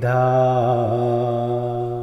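A man chanting Pali pirith verses, holding one long melodic note with a slight waver, cut off at the end.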